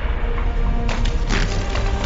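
Film sound effects of something shattering: a deep rumble with sharp cracking, splintering crashes about a second in, over a music score.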